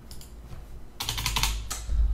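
Computer keyboard keystrokes: a couple of taps just after the start, then a quick run of presses from about a second in.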